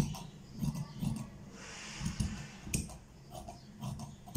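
Large steel tailor's shears cutting through net fabric and lining on a table, a series of snips and blade crunches at an uneven pace.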